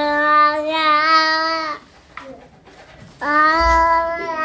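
A child singing two long held notes, the first lasting nearly two seconds, the second starting about three seconds in after a short pause.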